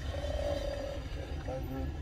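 A person's voice: one drawn-out vocal sound lasting about a second, then brief speech sounds, over a low steady rumble inside a car.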